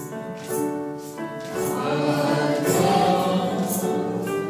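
Choir singing slow sacred music in long held notes that change every half second or so, swelling louder from about halfway through.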